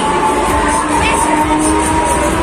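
Loud dance music with a steady beat from a Break Dance ride's sound system, mixed with riders shouting and cheering.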